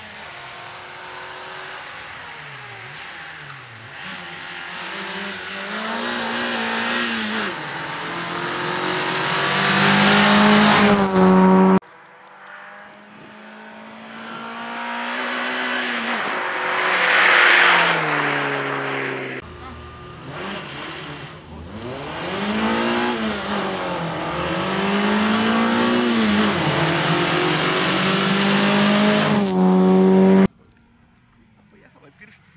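Renault Clio rally car driven hard, its engine revving up and dropping back again and again through gear changes and lifts for the corners, growing louder as it approaches. The sound breaks off suddenly twice and picks up again at a new point in the run.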